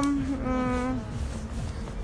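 A woman's drawn-out hesitation sound, 'а-а', held on one steady pitch: one carries on just past the start, and another comes about half a second in and lasts about half a second.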